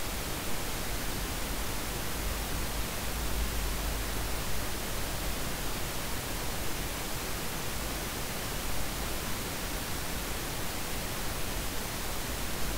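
Steady hiss with a low hum underneath: the recording's microphone background noise, with nothing else standing out.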